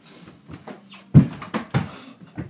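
A few sharp knocks and thuds beginning about a second in, the first one the loudest: a mini basketball dunk on an over-the-door hoop, with ball and hands striking the hoop and door.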